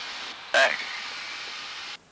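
Steady hiss of an open cockpit intercom channel in a Cessna Grand Caravan during the takeoff roll, with one short spoken word about half a second in. The hiss cuts off suddenly at the end as the channel closes.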